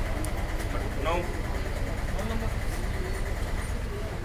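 A steady low rumble, like a vehicle engine running nearby, under brief snatches of voices, one short utterance about a second in.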